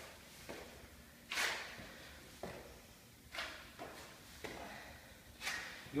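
Soft thuds of trainers landing on a rubber floor mat during Spider-Man climbs, each foot stepping up beside the hand in turn. About seven thuds come roughly a second apart, and the one about a second and a half in is the loudest.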